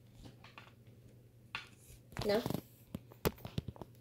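Faint handling noise of a plastic Battleship game, then a short spoken "No" and several sharp clicks from its pegs and board being handled, the loudest single click a little over three seconds in.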